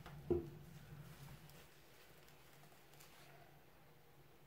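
A single sharp knock, a plastic paint bottle bumped against the table or the other bottles as it is picked up, then faint handling sounds.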